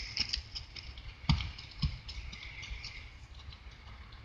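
Steady high chirring of crickets with fine rapid ticks, and two dull low thumps about half a second apart partway through.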